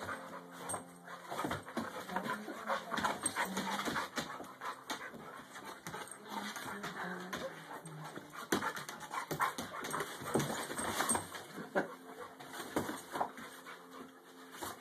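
A brindle boxer/golden puppy and an Olde English Bulldogge play-fighting: dog vocal noises over a dense, irregular run of short scuffs and knocks as they wrestle on a fabric dog bed.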